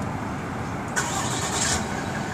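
Road traffic noise: a steady rumble of vehicles, with a brief rise of hissing, like a passing car's tyres, about a second in.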